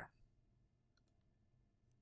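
Near silence, with two faint computer mouse clicks, one about a second in and one near the end.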